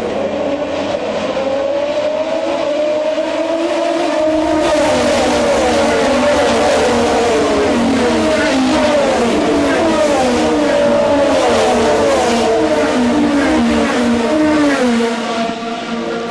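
Engines of several open-wheel race cars running at speed on a wet street circuit, their pitches repeatedly climbing and dropping and overlapping as cars accelerate, shift and pass.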